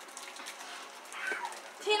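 Quiet room with a few faint light clicks, then a voice calling out a name near the end.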